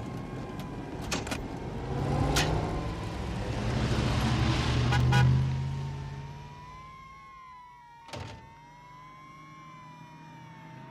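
Film sound effects of a small jet's engine whining steadily and wavering slightly in pitch, over a heavier rumble that swells in the middle and then dies away, with a few sharp bangs scattered through.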